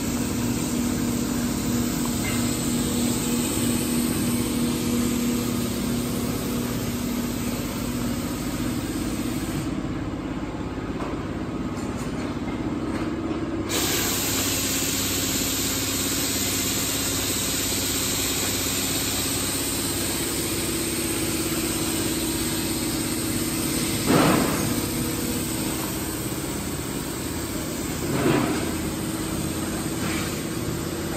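Steady hum and hiss of a laser cutting machine running, with two brief louder sounds near the end, about four seconds apart.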